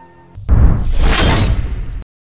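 Cinematic countdown-transition sound effect: a sudden heavy hit about half a second in, with a deep rumble under a hissing rush that swells and then cuts off abruptly.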